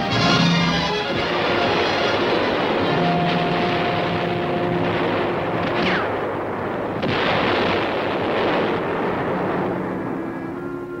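Orchestral score with held brass notes, mixed with a continuous din of battle sound effects: artillery explosions and gunfire.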